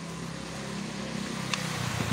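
A motor vehicle engine running steadily, growing louder as it comes closer, with a short sharp click about one and a half seconds in.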